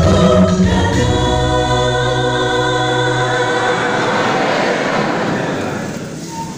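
A choir singing a gospel song, settling into one long held chord about a second in. The low voices drop out partway through and the chord fades.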